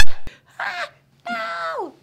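A woman's voice making wordless, exaggerated vocal sounds: a loud cry sweeping upward in pitch at the start, a short sound about half a second in, then a longer call that holds and slides down in pitch near the end.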